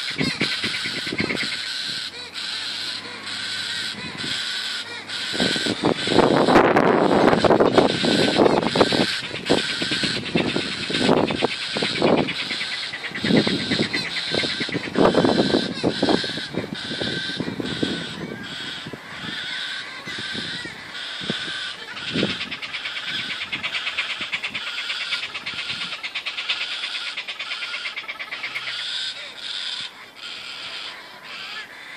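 Galahs (rose-breasted cockatoos) calling over and over in a long run of short, rough calls, loudest about six to nine seconds in and again around fifteen seconds.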